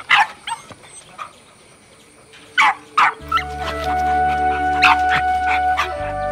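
A puppy yapping in a string of short, high barks, several in a row near the end. Soft music with a low drone comes in about halfway through.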